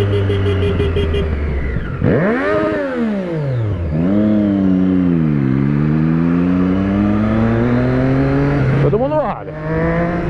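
Motorcycle engine heard from the rider's seat: a sharp rise and fall in revs about two seconds in, then falling revs as the bike slows, then a steady climb as it accelerates. Near the end come quick short blips of the throttle.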